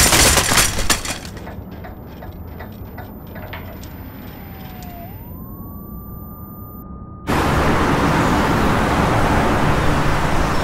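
Tail of a crash: loud noise in the first second dies away into scattered clicks and rattles, then a thin ringing tone slides down, swoops up and holds. About seven seconds in, busy city traffic noise cuts in suddenly.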